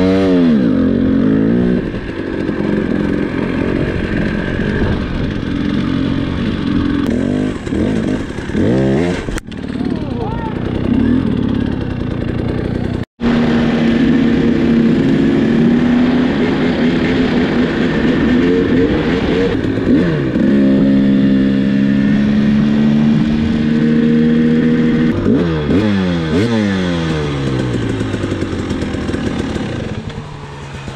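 KTM dirt bike engine under way, its pitch climbing and falling repeatedly with throttle and gear changes, holding steady in long stretches. The sound breaks off for an instant about thirteen seconds in. Near the end the engine note falls away as the bike slows.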